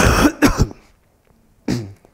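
A man coughing into his hand: a quick run of three or four coughs in the first half second or so, then one more short cough near the end.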